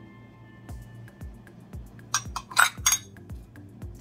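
A few sharp clinks of spice containers being handled, bunched together between about two and three seconds in, over background music with a steady low beat.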